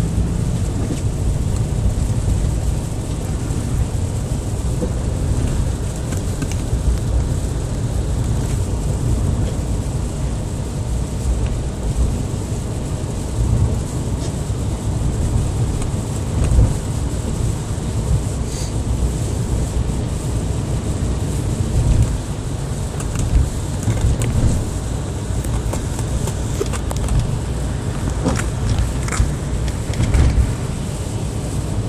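Steady low rumble of a car's engine and tyres heard inside the cabin while driving on a snow-covered road, with a few short knocks scattered through it.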